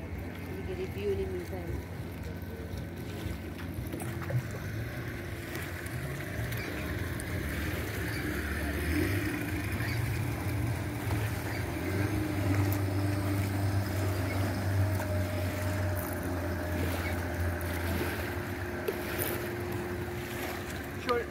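Motorboat engine running steadily, a low rumble that grows louder in the middle and eases off near the end.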